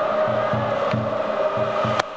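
Baseball stadium cheering section: drums beating a steady rhythm of about three beats a second under a sustained crowd chant.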